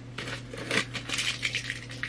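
Paperback books being handled and sorted in the lap: irregular rustling with light taps and clicks.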